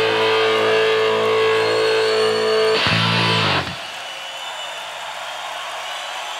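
A rock band's electric guitar and bass hold a final chord that stops suddenly with a closing hit about three seconds in. A steady hiss is left after it.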